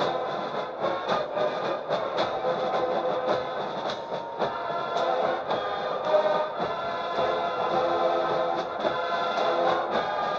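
Military marching band of brass and drums playing a march with a steady drum beat.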